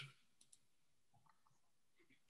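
Near silence with a couple of faint, short clicks about half a second in and a few fainter ticks a little later.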